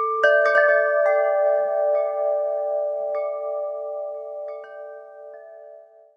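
Chimes ringing: clear tones of several different pitches struck one after another, overlapping as each rings on, with the last few strikes further apart and the whole slowly dying away near the end.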